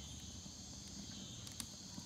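A steady, faint, high-pitched chorus of insects in the evening woods, with one faint click from the burning wood fire about one and a half seconds in.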